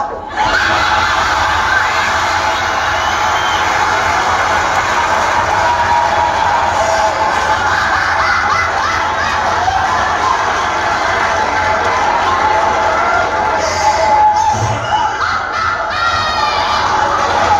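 A crowd cheering and shouting, many voices at once and without a break, with music playing underneath.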